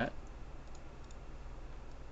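A few faint, scattered computer mouse clicks over a steady low background hum.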